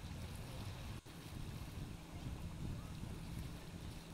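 Outdoor wind rumbling on the microphone over gentle waves washing against a rocky shore, a steady low rush, with a momentary dropout about a second in.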